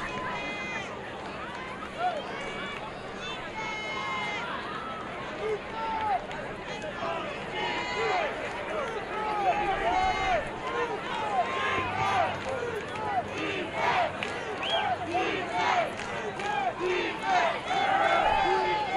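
Crowd and players at a college football game, many voices shouting and calling out over one another.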